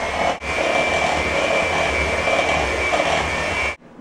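Handheld electric mixer beating flour into pumpkin bar batter on low speed: a steady motor whine with a short break just after the start. It switches off sharply near the end.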